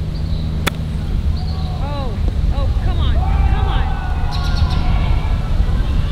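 Golf club striking the ball on a short chip shot: one sharp click about two-thirds of a second in, over a steady low rumble.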